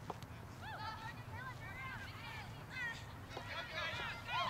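Distant high-pitched shouts and calls from young players and people on the sideline during a girls' soccer game, with a single sharp knock just at the start.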